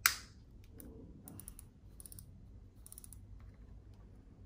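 A sharp plastic snap, then a few light plastic clicks and ticks about a second apart as a small wireless steering-wheel remote controller and its rubber strap are handled.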